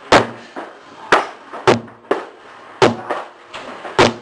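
Repeated heavy thuds of workout strikes or slams in a gym, about six irregular hits in four seconds, each with a short echo.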